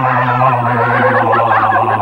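Horror-film soundtrack: a steady low drone under wavering, croaking, voice-like warbles that rise and fall over and over.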